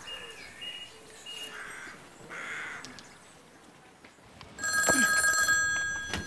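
A telephone rings with a loud electronic trill of several steady tones, starting about four and a half seconds in and lasting about a second before a short pause.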